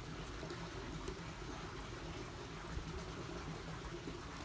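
Faint steady outdoor background noise with a low rumble, without distinct clucks or pecks.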